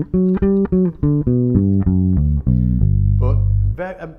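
Precision-style electric bass played fingerstyle: a quick run of single notes of a G major 7 arpeggio, about four a second. It ends on a held low note that is cut off just before the end.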